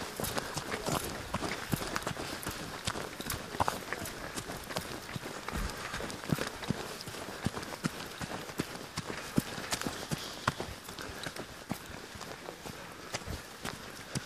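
Running footsteps on a dirt and dead-leaf mountain trail: a steady rhythm of footfalls through the whole stretch, heard from a camera carried by a runner.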